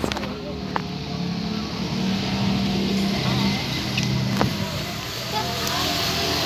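An engine running, its low hum stepping up and down in pitch, with three sharp clicks during it.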